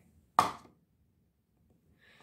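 A single short, sharp knock about half a second in, dying away quickly, then near silence.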